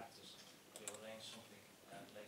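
Faint male speech with a few short clicks.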